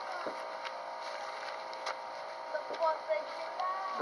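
Faint background conversation among several people, with a few soft clicks or pops in the first two seconds.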